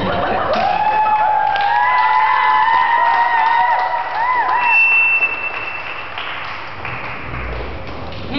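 Audience clapping and cheering in a hall, with a high held melodic line over it for a few seconds; the noise dies down about six seconds in.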